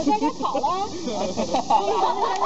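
Several children's voices talking over one another in a lively group chatter.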